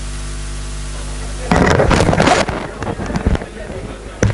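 Steady electrical mains hum on the recording, then about a second and a half in a loud rush of rustling noise lasting about a second, followed by scattered knocks and clicks.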